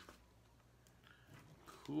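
Mostly quiet, with faint rustling of paper as a letter is handled; a man's short word comes near the end.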